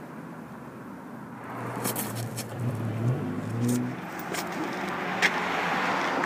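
A car driving past on the street: a low engine tone rises and falls around the middle, and tyre noise builds near the end. There is a sharp click about five seconds in.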